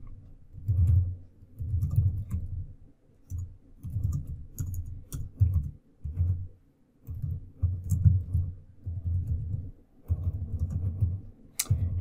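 Computer keyboard typing in short, irregular bursts of keystrokes with brief pauses between them.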